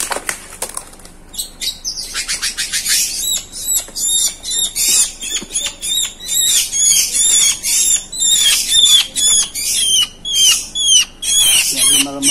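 A black-winged myna (jalak putih) giving rapid, repeated harsh squawks, several a second, as it is handled and taken from its cardboard box, with wing flapping among them. The calls start about a second and a half in, after rustling from the box.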